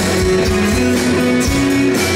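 Live rock band playing a song: drums, bass, guitars and keyboards, with a steady beat under sustained notes that step up and down in pitch.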